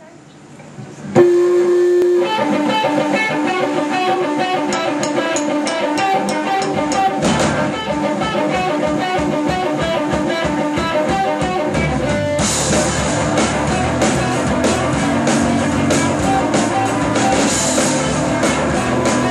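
Live pop-punk rock band starting a song. An electric guitar plays alone from about a second in. Heavier bass comes in partway through, and the full band with cymbals crashes in about two-thirds of the way through.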